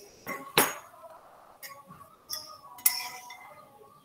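About five sharp clinks and knocks, the loudest about half a second in and near three seconds in, over a faint steady background tone.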